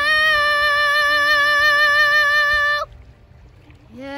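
A young girl's voice holding one long, high sung note with a slight waver. It cuts off about three seconds in, and after a short pause she begins a lower sung phrase near the end.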